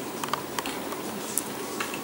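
Handling noise from a glass nail-polish bottle being turned in the hand: a few light clicks and ticks of fingernails and glass, the sharpest about a second and a half in, over a steady low hiss.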